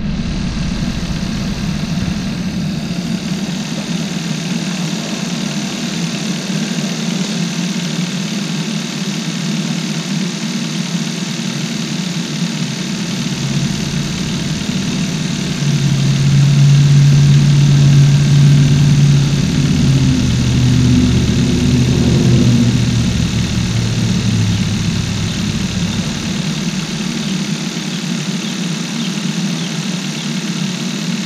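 Kia Rio's 1.6 GDI four-cylinder engine idling steadily. From about halfway a deeper hum grows louder, drops in pitch over several seconds and stops shortly before the end.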